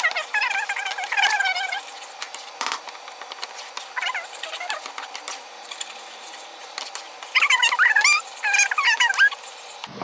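Wooden spoon scraping and stirring a thick flour-and-oil roux in a pan, with light scrapes and clicks. High, wavering, chirping calls sound over it in the first couple of seconds and again from about seven to nine seconds in, and these are the loudest sounds.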